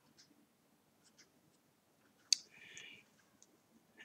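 Faint small clicks of a crochet hook working cotton yarn in a quiet room, with one sharp click a little past the middle.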